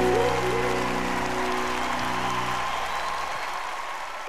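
A live band's final held chord ringing out and fading away, with audience applause under it.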